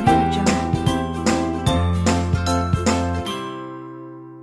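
Background music with a bass line and a run of quick struck notes that stops about three seconds in, leaving a held chord that fades out.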